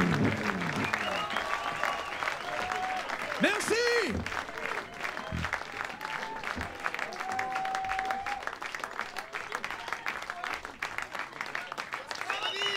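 Concert audience applauding, with scattered shouts and cheering voices through the clapping. One louder shout comes about four seconds in.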